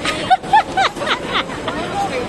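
A toddler's high-pitched babbling: a quick run of short syllables that rise and fall, over the murmur of a crowd.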